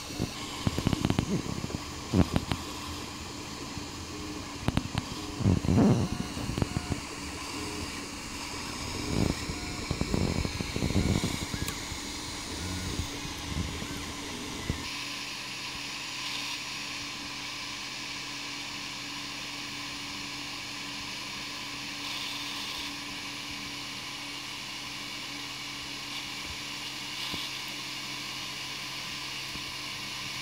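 Home-built RAMPS 1.4 3D printer: irregular low rumbling bursts and knocks through the first half, then only the steady hum and hiss of its fans from about fifteen seconds in.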